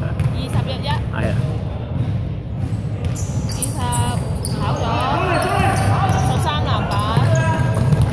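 Basketball game on a hardwood indoor court: the ball bouncing, then short high squeaks and shouts that grow busier from about the middle as play resumes after a free throw. The hall is large and echoing.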